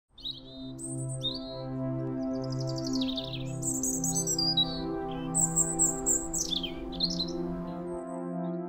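Ambient music of long held notes with birdsong over it, chirps and trills that glide up and down; the birds fall silent shortly before the end.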